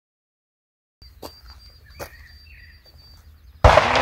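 A single shotgun shot about three and a half seconds in, sudden and loud, with a long echoing decay. Before it, faint open-air ambience with a few small clicks.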